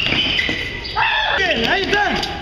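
A young girl's very high-pitched voice crying out, starting about a second in, over background noise.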